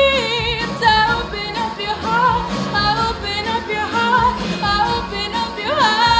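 A young woman singing a pop song solo over a backing track, her voice sliding up and down between held notes.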